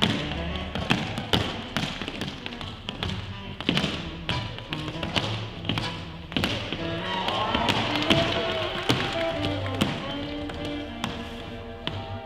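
Tap shoes striking a hard dance floor in quick, uneven runs of sharp clicks during a solo tap routine, over music.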